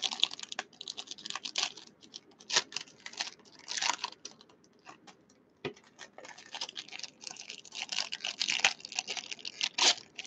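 Foil trading-card pack wrappers crinkling and crackling in hands in irregular bursts, with a lull about halfway through broken by a single soft thump.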